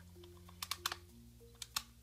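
A few sharp, irregular crunches of a crisp brandy snap being bitten and chewed, over soft background music with long held notes.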